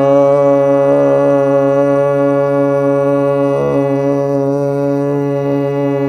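A harmonium's reeds sounding one held note, Sa, with a man's voice singing a long 'saa' in unison at the same pitch. It is a steady drone with a slight waver about a second in and again near four seconds, and the voice and reed match in pitch.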